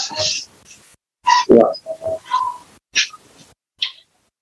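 A person's voice speaking short, halting words ("yeah", "so") with pauses between them, over video-call audio.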